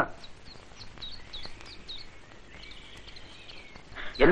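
Small birds chirping: a series of short, high, falling chirps, about three a second, then a longer continuous call in the later part, over faint steady background noise.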